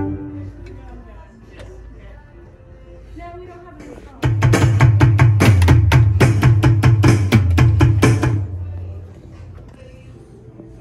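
Alesis Strike Pro electronic drum kit being played, its amplified kit sounds heard. The first few seconds hold scattered, quieter pitched hits. About four seconds in, a loud, fast run of hits with heavy bass starts, about five strikes a second, and it fades out after about four and a half seconds.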